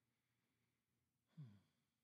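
Near silence of a quiet room, broken once a little past halfway by a short sigh from a person, its pitch falling.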